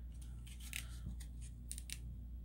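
A plastic blister-card cosmetic package being handled: a few short, sharp crinkling clicks, two close together near the end, over a low steady hum.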